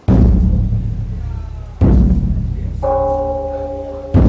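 A large drum struck twice, less than two seconds apart, each stroke leaving a deep boom that slowly dies away. Near the end a bell starts ringing with a steady, lingering tone.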